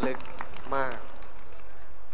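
Speech: a few short words spoken into a microphone, then a pause over a steady low background hum.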